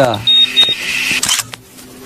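Two quick high-pitched dings, about a quarter second apart, followed by a brief hiss lasting about a second: an edited-in sound effect.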